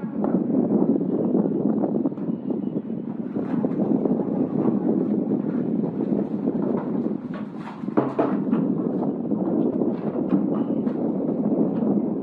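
Wind buffeting the camera microphone outdoors, a loud, steady rumbling noise with a few faint clicks through it.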